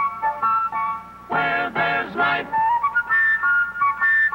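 Commercial jingle music: a flute plays a stepwise melody, broken about a second and a half in by three short, loud notes from the full ensemble.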